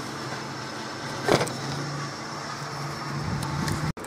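A steady low background hum with one short knock about a second in; the sound cuts off abruptly just before the end.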